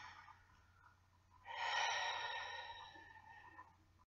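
A person's long, breathy sigh, starting about a second and a half in and slowly fading over about two seconds.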